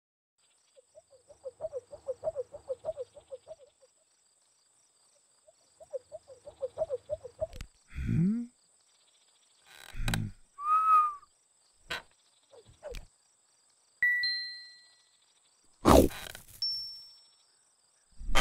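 Cartoon sound effects: two bursts of quick, rapidly repeated chirping, followed by a string of short separate effects, namely a falling tone, a few clicks, a brief ringing tone, two fading dings, and a sharp hit near the end.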